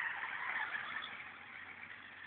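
A buggy's motor running with a wavering whine, fading away over about a second and a half.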